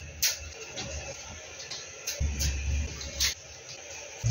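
Small paper decorations being peeled off a wall by hand: a few soft ticks and rustles, with a low rumble of movement about halfway through.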